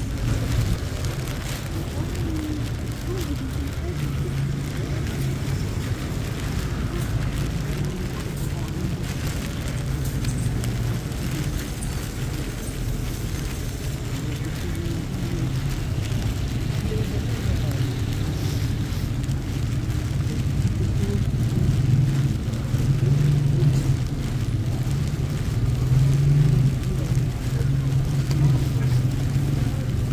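City street ambience: a steady low rumble of traffic on the wet road, with indistinct voices of passersby, growing somewhat louder past the two-thirds mark.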